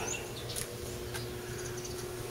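Quiet background: a steady low hum with a faint held tone, and a few faint, short high chirps, typical of insects or birds outside an open door.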